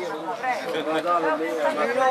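Speech only: several men talking at once in casual chatter.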